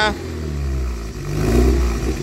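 Alfa Romeo 75 2.0 Twin Spark four-cylinder engine running at the tail pipe through a newly fitted rear exhaust silencer, with a throttle blip swelling and dropping back a little past the middle.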